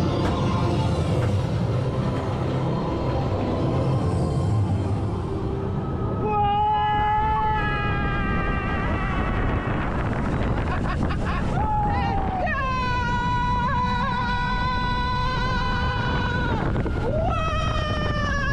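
Roller coaster train running fast along its steel track with a steady rush and rumble. About six seconds in, a rider begins screaming: several long, high screams, each held for one to four seconds.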